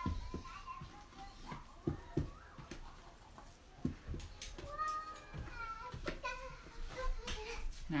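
A utensil stirring thick hot-process soap batter in an electric roaster pan, giving irregular soft knocks and scrapes against the pan, with a child's voice faintly in the background.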